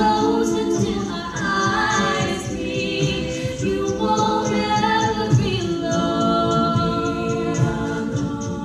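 Female a cappella group singing: a lead voice carrying the melody over sustained, shifting backing harmonies, with a steady beat underneath.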